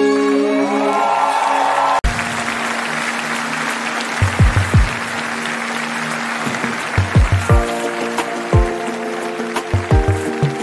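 A song's final held chord, cut off abruptly about two seconds in, then a studio audience clapping over a steady low musical tone and scattered low thumps, with the next song's instrumental intro chords coming in about seven and a half seconds in.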